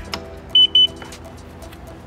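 Two short high-pitched electronic beeps from the 2022 Kawasaki Ultra 310LX jet ski as its key is put in, the watercraft's electrical system switching on without the engine running.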